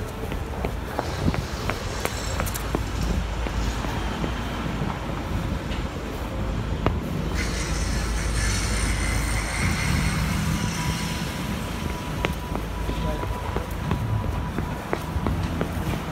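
Busy city street traffic with a steady low rumble, and a box delivery truck passing close. A sudden hiss starts about seven seconds in and lasts a few seconds, over scattered footstep clicks.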